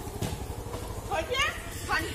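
Small motorcycle engine running as the bike pulls away, its low firing pulses fading as it goes, with brief snatches of a voice over it.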